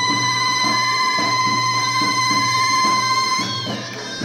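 Mizmar, the Egyptian double-reed shawm, holding one long, steady high note over a steady beat on a tabl baladi bass drum and goblet drum. The note ends with a short bend in pitch about three and a half seconds in.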